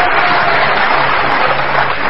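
Studio audience applauding and cheering in a dense, steady wash of noise that begins to thin out near the end, with the game show's low sustained background music under it.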